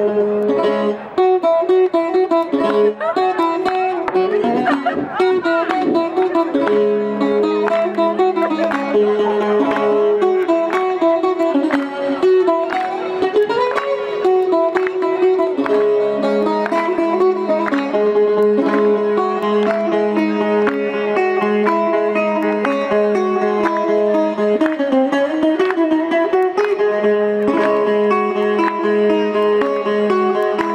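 Greek folk dance music led by a plucked bouzouki melody over a recurring held low note, starting abruptly and playing loudly throughout; the kind played for a solo zeibekiko dance.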